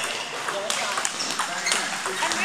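Table tennis balls clicking off bats and tables in an irregular run of sharp taps, over people chattering.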